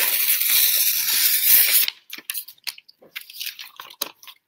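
A sheet of paper being torn by hand in one long rip lasting about two seconds, followed by lighter rustling and crinkling as the paper is handled.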